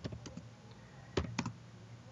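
Typing on a computer keyboard: a few light keystrokes at the start, then three sharper ones a little over a second in.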